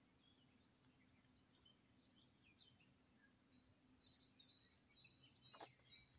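Near silence with faint, scattered chirps of distant songbirds, and one soft tap near the end.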